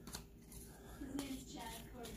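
Faint rustling and sliding of a stack of cardboard baseball cards being flipped through by hand, with a few soft clicks as cards are moved.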